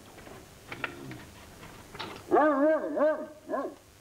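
A spoon clinking lightly against a glass caviar dish, then a loud wavering, whine-like vocal sound of several rising and falling notes, ending in one short note.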